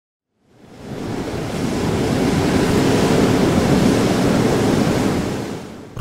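A whooshing rush of noise rises out of silence about half a second in, swells to full over a couple of seconds, holds, then fades away near the end: a channel-intro sound effect leading into a logo reveal.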